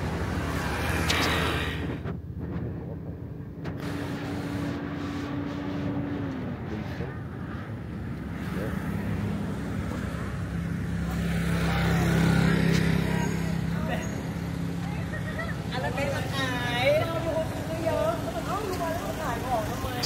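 Street traffic: motor vehicle engines running and passing, with one vehicle growing louder and passing about twelve seconds in. People's voices are heard near the end.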